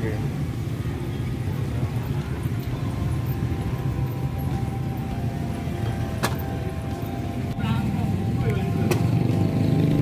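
Steady low rumble of motorbike and street traffic around a market snack cart, with two sharp clicks, one about six seconds in and one near nine seconds.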